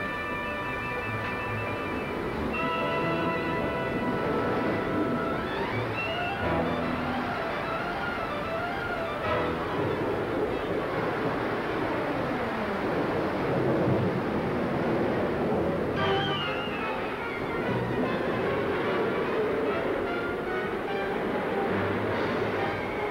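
Dramatic orchestral film score, held chords for the first few seconds and then falling runs, over the steady rushing of flood water.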